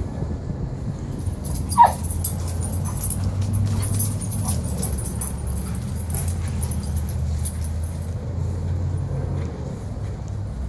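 Two Airedale terriers playing, with one short high yelp that drops sharply in pitch about two seconds in, over a steady low rumble.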